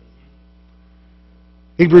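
Low, steady electrical mains hum with no other sound, until a man's voice begins near the end.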